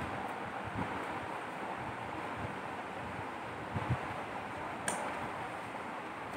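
Steady background hiss, with a few soft knocks a little past the middle and a sharp click about five seconds in.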